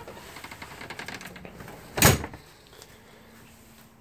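Shuffling and rustling of someone taking off their shoes at a trailer's entry steps, then one sharp thump about two seconds in, followed by a faint steady hum.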